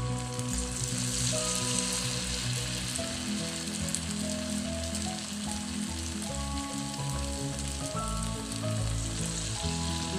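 Hot oil sizzling steadily as balls of cabbage and potato Manchurian mixture deep-fry in a pan, with background music underneath.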